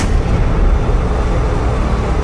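Loud intro sound effect: a sharp hit at the start, then a deep, dense rumble held at an even level.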